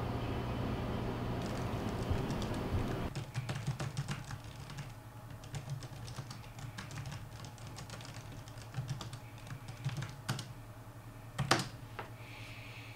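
Typing on a laptop keyboard: irregular, quick key clicks, with a louder clack near the end. Before the typing starts, about three seconds in, there is a steady low hum of room noise.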